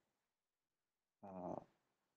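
Near silence, then a little over a second in, one short, quiet voiced hesitation sound, an "mm" or "uh", from the presenter's voice.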